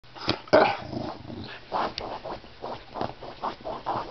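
A corgi digging and scratching at a fabric couch cushion in irregular bursts, growling as it goes.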